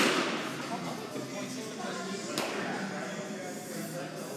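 Two sharp cracks of baseball impacts in a large indoor hall. The first comes right at the start and echoes away, and the second comes about two and a half seconds in, over a low murmur of distant voices.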